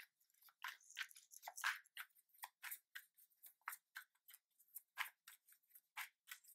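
Tarot cards being handled in the hands: a run of short, soft papery flicks and scrapes, about three or four a second.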